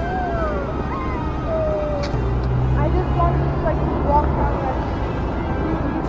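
Steady road traffic rumbling from an adjacent highway, with a heavier vehicle's low hum rising about two seconds in and fading near the end. Long sliding tones sound over it.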